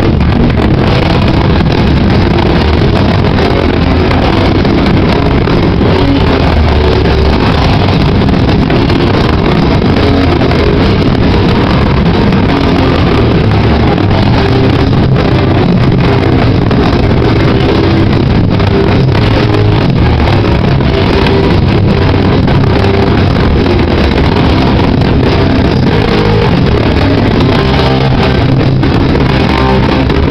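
A band playing metallic crust punk live at full volume, guitars and drums blurred into one dense, unbroken wall of sound. The recording is overloaded and clipped, so the music comes through as a distorted roar with no breaks.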